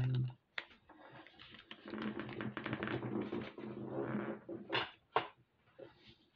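Small beads clicking and rattling against each other and the tabletop as they are tipped out and stirred by hand, a dense run of fine clicks lasting a few seconds, followed by two sharper clicks about five seconds in.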